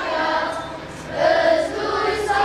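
A choir singing sustained notes; the voices drop away briefly about halfway through, then swell back louder.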